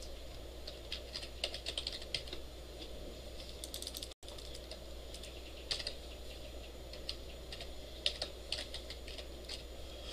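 Computer keyboard typing in irregular bursts of keystrokes as code is entered, over a steady low hum. The audio drops out for a split second about four seconds in.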